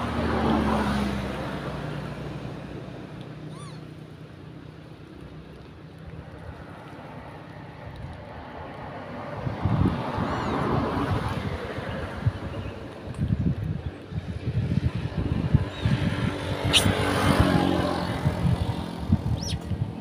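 Road traffic: a car passes close by and fades away over the first few seconds, then more vehicles swell past in the second half, the loudest around ten seconds in and again near the end.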